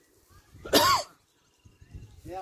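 A person coughing once, a short loud cough close to the microphone just under a second in.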